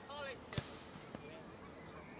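A football kicked: one sharp thud about half a second in, then a fainter knock of the ball about a second in. Players' voices call faintly.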